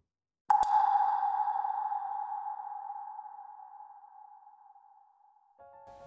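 A single sharp ping with a clear ringing tone that fades away slowly over about four and a half seconds. Faint, steady musical notes come in near the end.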